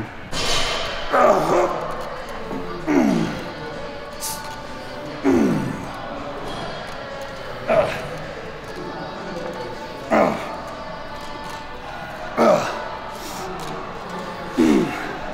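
A man grunting with effort on each repetition of a heavy chest-supported row, six strained grunts about two and a half seconds apart, each falling in pitch. Background music runs underneath.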